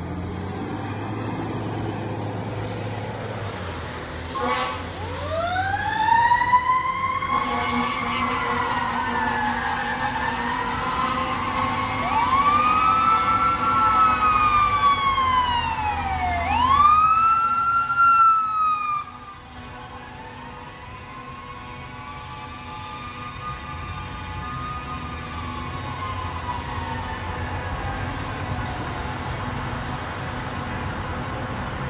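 Fire engine's low engine rumble as it pulls away, then its siren comes on about four seconds in, wailing up and down in long rising and falling sweeps. A little past halfway the siren drops suddenly in loudness and carries on fainter as the truck moves off down the road.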